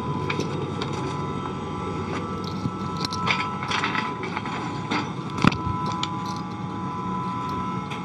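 Steady hum of the International Space Station's cabin fans and equipment, with a few thin steady tones. Several knocks and clicks come from someone moving through the modules, the sharpest about five and a half seconds in.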